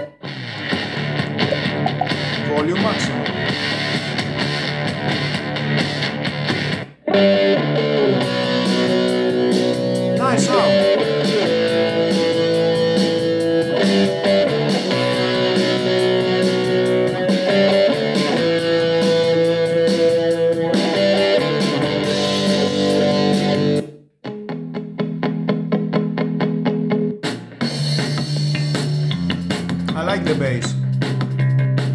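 Music streamed from a phone over Bluetooth, playing through the Xiaomi Mi Smart Clock's built-in speaker as a test of its sound. It stops abruptly and a different song starts about seven seconds in and again about 24 seconds in, as tracks are skipped.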